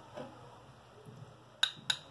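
Two short, sharp glass clinks about a third of a second apart near the end, from a small glass mixing bowl being handled, in an otherwise quiet room.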